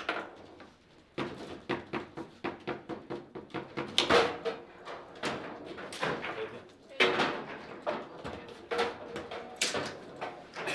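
Table football being played: quick, uneven clacks and knocks of the ball striking the rod-mounted figures and the table walls, with rods sliding and rattling. The hardest hits come about four and seven seconds in, and a goal is scored during the play.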